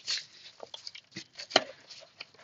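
A kraft paper padded mailer crinkling and crackling as hands grip and tug at its corner to tear it open, a run of irregular short crackles with the sharpest just after the start and about a second and a half in.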